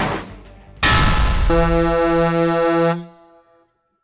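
Title-card transition sound effects: a whoosh, a loud hit about a second in, then a held pitched tone pulsing four times that stops abruptly about three seconds in.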